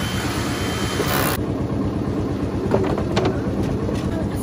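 Engine of a red site machine idling steadily close by. A hiss runs through the first second or so, and a few light knocks come about three seconds in as a mortar board is set down on its metal stand.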